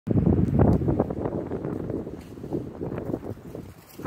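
Wind buffeting the microphone in uneven gusts, loudest in the first second and a half and easing off toward the end.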